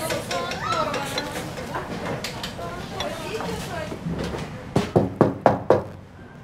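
Murmur of voices with some clinking of dishes, then about five quick, loud knocks on a door near the end.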